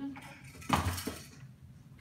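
A hard object clattering onto a tabletop: one sharp, loud knock with a short ring about two-thirds of a second in, then a smaller knock.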